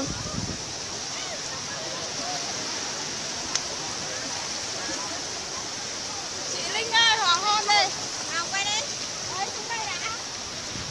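Sea surf washing onto a sandy beach: a steady rushing. From about seven to nine seconds in, high-pitched voices shout over it.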